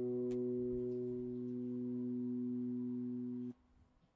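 A single sustained pedal steel guitar note, played from an autosampled keygroup program on an Akai MPC Live II: it holds steady while its upper overtones fade, then cuts off suddenly about three and a half seconds in.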